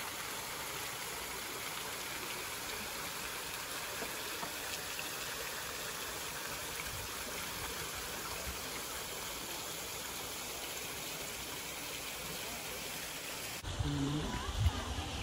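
Water spraying down from a rock face into a pool, a steady splashing rush that stops abruptly near the end.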